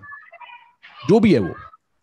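A single drawn-out vocal call about a second in, lasting under a second and rising then falling in pitch, after a few faint high tones.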